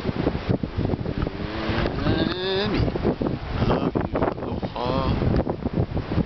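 Wind buffeting the microphone in a steady, gusting rumble. Two short pitched, voice-like calls cut through it, one about two seconds in and another about five seconds in.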